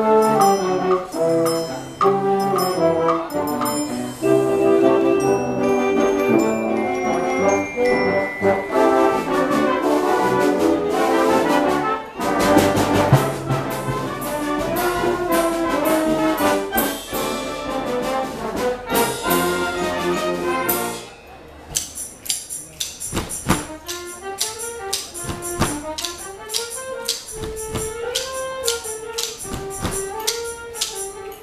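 Student concert band playing, brass to the fore with percussion. About two-thirds of the way through, the full band drops away to a quieter passage of a single melodic line over scattered percussion strokes.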